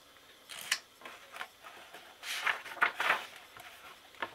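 Page of a hardcover picture book being turned by hand: soft paper rustles and a longer sliding swish near the middle as the page goes over.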